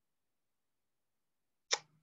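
Dead silence, with the sound cut out entirely, during trouble with playing a shared video. Near the end comes one short, sharp vocal sound from a man as he is about to speak.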